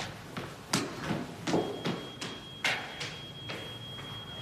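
Quick footsteps running up a stairwell, about two or three a second. About a second and a half in, a steady high-pitched electronic tone begins and holds: a smoke alarm sounding.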